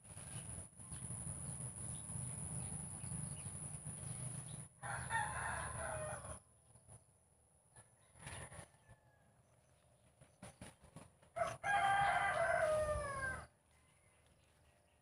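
A rooster crowing twice, the second crow louder and about two seconds long, falling in pitch at its end. A low steady rumble fills the first few seconds.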